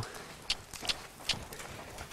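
A horse's hooves striking soft dirt arena footing at a trot: a steady run of sharp hoofbeats, about two and a half a second.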